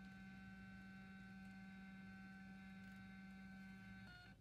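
MakeID Q1 thermal label printer running as it prints a label: a faint, steady motor hum at one constant pitch, stopping abruptly as the label finishes.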